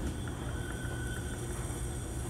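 Steady low room hum, with a faint thin tone for about half a second near the middle.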